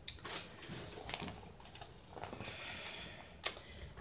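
Light clicks and rattles of a budget tripod's plastic pan head being handled and adjusted, with one sharp click near the end.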